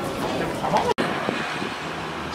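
City street ambience with road traffic going by, a steady noise bed, broken by a momentary silent gap just under a second in.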